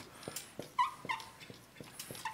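Dry-erase marker writing on a whiteboard: light ticks of the pen strokes, with two short squeaks about a second in.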